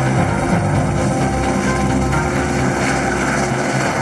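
Helicopter lifting off, its rotor beating and turbine running, with background music mixed under it.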